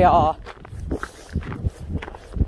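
Footsteps on snow-covered lake ice: a few separate steps about every half second. A drawn-out, wavering voice trails off right at the start.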